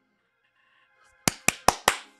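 Four quick, sharp hand claps about a fifth of a second apart, starting a little past a second in, over faint background music.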